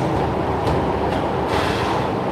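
Steady rushing background noise, with about three faint taps of the ball of a bare foot on a tiled floor, roughly half a second apart.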